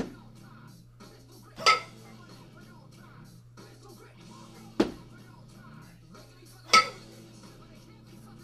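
A pair of 12 kg kettlebells clanking together with a bright metallic ring as they drop from overhead back to the chest after each jerk, twice about five seconds apart. There is a duller thud in between.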